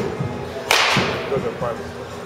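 A baseball bat swung hard through the air: one swish about two-thirds of a second in, fading quickly.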